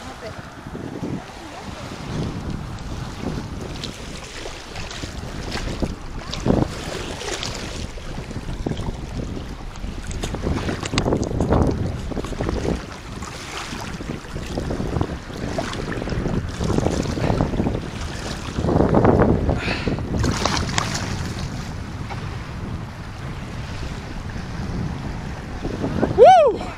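Shallow sea water sloshing and splashing around the legs and hands of someone releasing a large redfish, with wind buffeting the microphone in irregular gusts.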